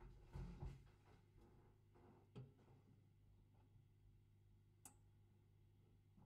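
Near silence over a low steady hum, with a few faint knocks and clicks: a low thump about half a second in, a click near the middle and a sharp tick near the end.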